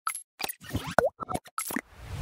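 A quick series of about eight short cartoon pop and plop sound effects from an animated logo intro. The loudest is a sharp pop with a quick pitch sweep about a second in.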